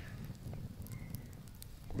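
Small wood fire crackling in a pit under a bucket smoker, with a handful of faint sharp pops after about a second.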